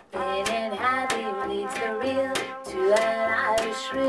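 Small jazz combo playing an instrumental break: trumpet carrying the melody over upright bass and electric guitar keeping a steady beat of about two strokes a second.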